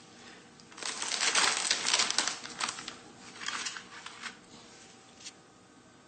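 Plastic Oreo cookie wrapper being pulled open and crinkled: a run of rustling about two seconds long, then two shorter rustles and a small click near the end.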